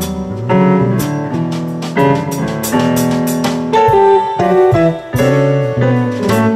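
Jazz fusion quartet playing live: piano chords with electric guitar, bass and drum kit, cymbal and drum strokes marking the beat.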